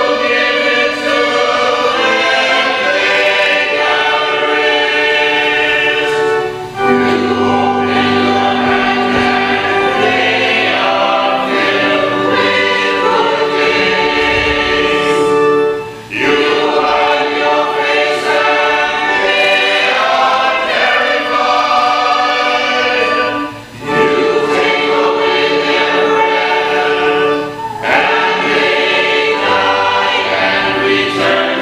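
Church choir of mixed men's and women's voices singing in long held phrases, with brief breath pauses between phrases.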